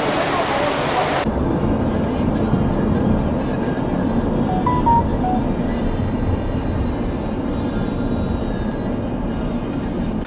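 Steady low rumble of road noise inside a moving car, with faint music over it. It begins with an abrupt change about a second in from a brighter, hissier outdoor background.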